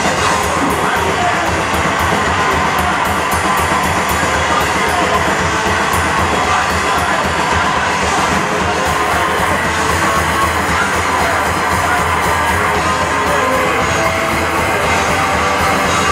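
Live heavy rock band playing loud: a drum kit and electric guitar in a dense, steady wall of sound.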